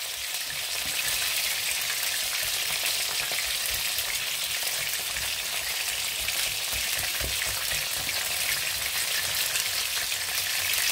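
A whisk stirring thick mashed potatoes in a stainless steel pot, over a steady sizzling hiss from the hob.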